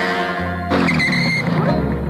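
Cartoon motorcycle sound effect: the bike's engine and a tyre skid as it pulls up, starting suddenly under a second in with a falling pitch, over background music.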